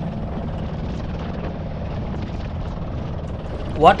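Small outrigger boat's motor running steadily under way, mixed with wind and rushing water as the hull crosses rough, choppy sea.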